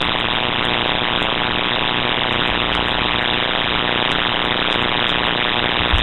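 Steady electrical hiss and static with a faint hum running under it, constant in level, from the audio system's own noise.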